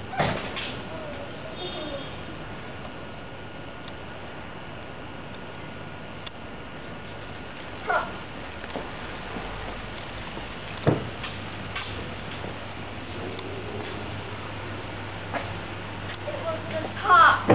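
A steady low hum with a few isolated knocks and clicks, the sharpest about eleven seconds in, and a brief rising squeak-like sound about eight seconds in.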